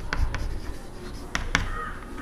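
Chalk writing on a chalkboard: scratching strokes broken by several sharp taps as the chalk strikes the board.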